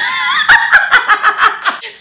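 A woman laughing in a quick run of short laughs.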